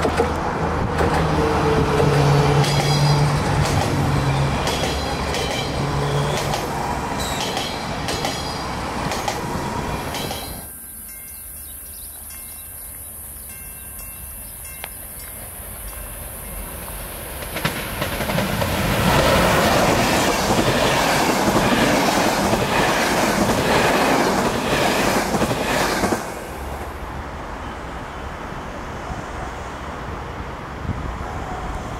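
A Siemens Desiro electric multiple unit passes close by, its electric motors whining in steady tones. After a cut it goes quieter, with a steady high buzz, until a locomotive-hauled train goes by loudly from about 18 s, its wheels clicking regularly over the rail joints. Near the end, after another cut, it is quieter.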